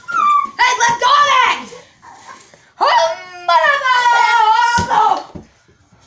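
A boy's high voice making wordless animal-like cries, yelps and whines as a pretend puppy or cat: several short calls, then one long, slightly falling whine about three and a half seconds in.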